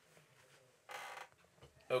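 A short creak-like handling sound, about a second in, as an open paperback picture book is lifted up and shown.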